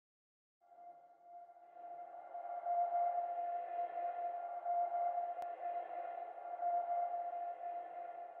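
Quiet sustained synth drone, a single held note with faint overtones, fading in about a second in: the opening of background music.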